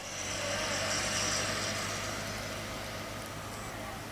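A motor vehicle passing on a road: a rushing sound that swells about a second in and then slowly fades away.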